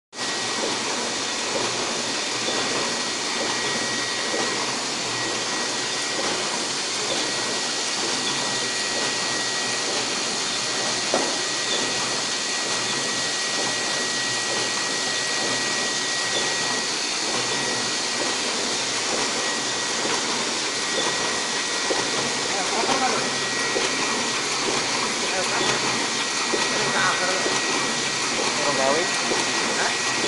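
Komori Sprint single-colour sheet-fed offset press running, a steady hissing mechanical noise with a thin high whine that drops out now and then.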